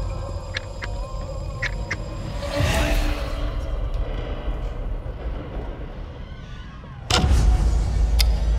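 Horror trailer sound design: a low rumbling drone with a few faint clicks and a swell about two and a half seconds in, then a sudden heavy boom about seven seconds in that leaves a loud low rumble.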